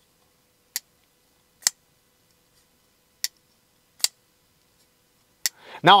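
Xtouc titanium frame-lock flipper knife with an M390 blade being flicked open and closed: five sharp, separate clicks as the heavy, crispy detent lets go and the blade snaps out or shuts.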